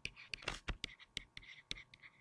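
Stylus writing on a tablet screen: a quick, irregular series of small clicks and short scratchy strokes as letters are written.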